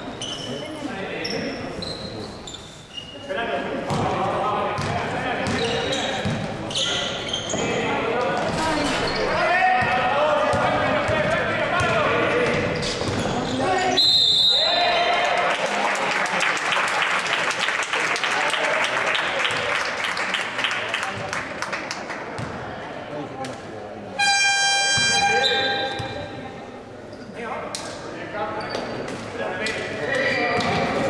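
Basketball game in an echoing sports hall: shouting voices and ball bounces, a short shrill referee's whistle about halfway, then a stretch of crowd noise. A few seconds before the end, the scoreboard's electric horn sounds for about a second.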